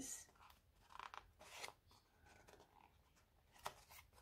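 Faint rustling and crinkling of a paper sticker sheet being handled and bent in the hands: a few soft, brief crackles.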